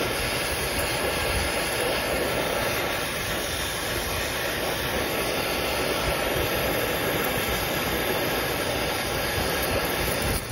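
Brazing torch flame burning with a steady rushing noise as it heats a copper tubing joint at an air-conditioning condenser's service valve.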